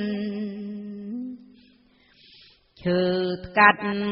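Khmer smot, Buddhist verse chanted solo by a woman: a long held note with a slight waver fades out about a second and a half in, and after a short pause the chanting resumes near the end.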